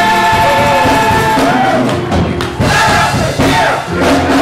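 Church choir holding a final chord that breaks off about a second and a half in, followed by voices calling out and cheering.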